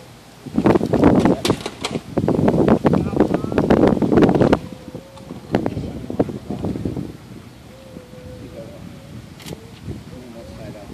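Indistinct talking close to the microphone, in two stretches over the first seven seconds, then a quieter background.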